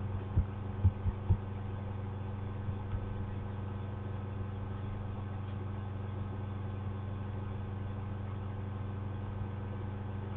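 A steady low hum with evenly spaced pitched lines, with four short soft knocks in the first second and a half.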